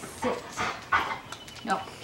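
Yellow Labrador retriever making a few short whimpers and pants as it waits for its food bowl to be set down.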